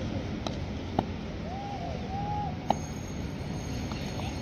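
Open-air background noise with three sharp clicks and a few faint short calls in the distance.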